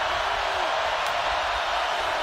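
Steady crowd noise from a large stadium crowd, an even wash of many voices with no single voice standing out.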